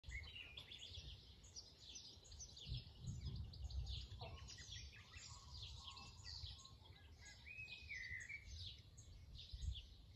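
Several birds chirping and calling continuously, with one longer, level-pitched call about eight seconds in. A faint, uneven low rumble runs underneath and swells briefly a few times.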